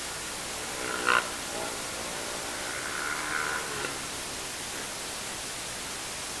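Steady hiss of an action camera's microphone, with a short, loud pitched sound about a second in and a longer, softer pitched sound around three to four seconds in.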